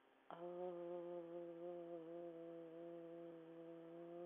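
A woman's low, steady 'aaah' sung on one long exhale through a half-open mouth. It starts about a third of a second in and is held without a break. It is a prenatal breathing exercise: the low sound from the belly lengthens the out-breath to relax the muscles and ease contractions.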